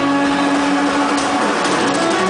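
Live rock band playing loud and distorted, recorded on a phone: a held, distorted electric-guitar note rings for over a second, and a run of sharp hits comes near the end.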